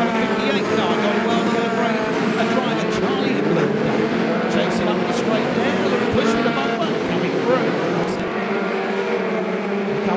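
Engines of several BriSCA stock cars racing together. Their overlapping engine notes rise and fall as the cars drive through the bend.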